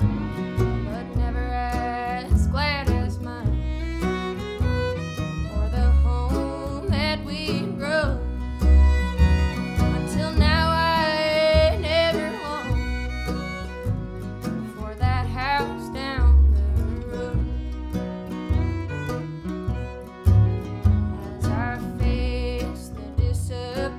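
Acoustic bluegrass string band playing: fiddle carrying sliding melody lines over mandolin, acoustic guitar and upright bass keeping a steady beat.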